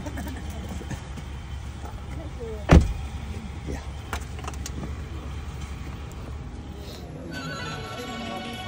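A car door slamming shut with one heavy thump about three seconds in, over the low steady rumble of the car's engine idling.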